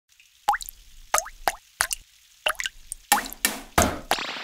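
Cartoon water-drop sound effects for falling rain: single plops with a quick rising pitch, about five spread over the first two and a half seconds, then coming faster and thicker with splashy noise near the end.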